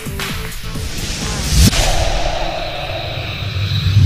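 Logo sting: a rising whoosh builds to a heavy hit about one and a half seconds in, followed by a long ringing tone over a low rumble.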